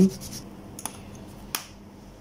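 Two short, sharp clicks, the second louder, about two-thirds of a second apart, from hands handling a pencil, paper and circuit board on a desk.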